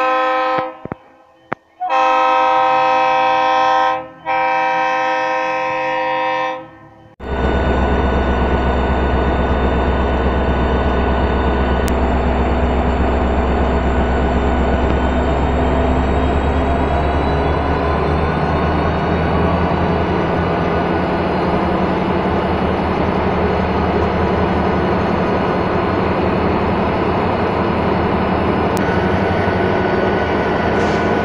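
A locomotive air horn sounds two long blasts, about two seconds each. Then, from about seven seconds in, a steady, loud running of Ferromex 4125, an EMD SD70ACe diesel-electric locomotive, close by, with a deep low hum.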